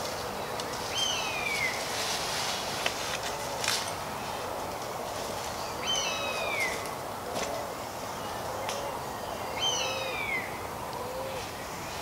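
A bird in woodland at dusk calling three times, about four seconds apart, each call a sharp note that slides down in pitch. Softer short low notes repeat behind it, with a few faint clicks.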